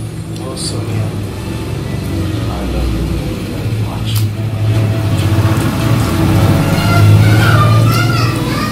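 A low, steady motor-vehicle engine hum that grows louder over several seconds, with voices in the background.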